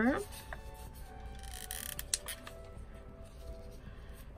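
Soft background music, with faint handling sounds of the papercraft: a brief paper rustle near the middle and a couple of light clicks just after, as torn paper is pressed down onto hot glue.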